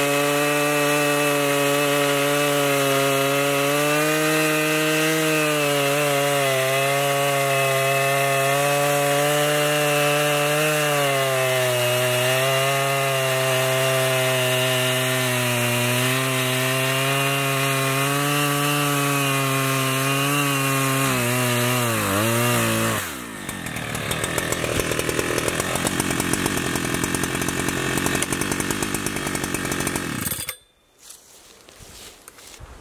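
Husqvarna 3120 XP chainsaw's two-stroke engine running at full throttle as the chain cuts through a large oak log, its pitch wavering under load and sagging about twenty-two seconds in. About twenty-three seconds in the pitch drops sharply and the engine falls to a rapid, rough idle.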